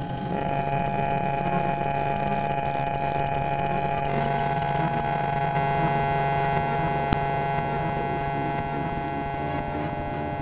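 Experimental glitch electronic music: a dense drone of several held synthetic tones over a bed of noise. About four seconds in a brighter hissing layer comes in, and a single sharp click sounds near seven seconds.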